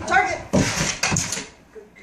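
A woman's voice calling out briefly, followed by about a second of scuffling and quick thuds as a German shepherd and its handler move across a carpeted floor onto a plastic step.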